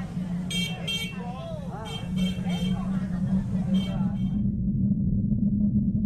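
A steady low drone under a layer of voices and short horn-like toots. The upper layer cuts off suddenly about four seconds in, leaving only the drone.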